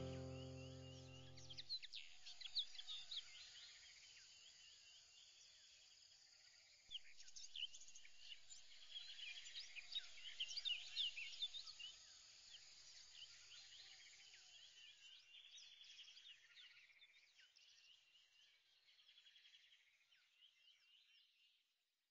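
Faint chirping of many birds, dense in the middle and fading out near the end. A music chord dies away in the first two seconds.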